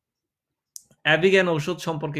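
A man's voice speaking after a pause of dead silence, with a single short click just before he starts, about a second in.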